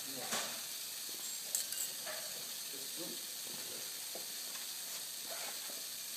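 Steady hiss of pressurised air escaping from an experimental Professional Instruments 4R air bearing with carbon sleeves. A few light metallic clicks come about a third of a second in and again about a second and a half in.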